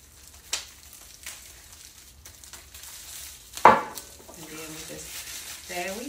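Crinkly plastic wrap rustling as it is handled around a bottle, with a small tap about half a second in and one sharp, loud sound a little past halfway.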